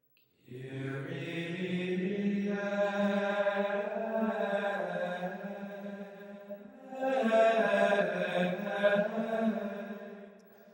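Chanted vocal music with long held notes over a steady low drone, beginning about half a second in; a new phrase swells about two-thirds of the way through, and it fades near the end.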